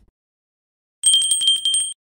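Notification-bell sound effect: a small bell rung rapidly, about ten strikes a second, for nearly a second, starting about a second in and stopping abruptly.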